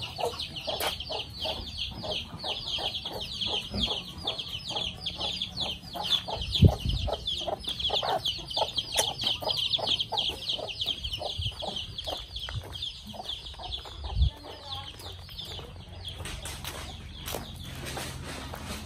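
Chicks peeping continuously in quick falling chirps, several a second, over slower, lower clucks from adult chickens; the peeping dies away near the end. Two dull thumps stand out, about a third and three-quarters of the way through.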